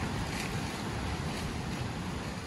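Steady rushing noise with irregular low buffeting, typical of wind on the microphone.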